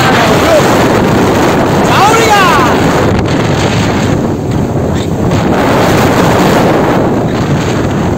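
Loud wind buffeting the microphone, held outside a moving Chevrolet D20 pickup truck, with the truck's road noise underneath.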